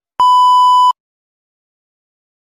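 A single loud, steady, high-pitched test-tone beep, the kind played with TV colour bars, lasting under a second and cutting off abruptly.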